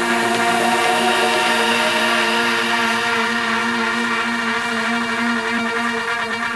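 Electronic music from a DJ mix in a beatless passage: a held synth drone with layered sustained tones and no kick drum.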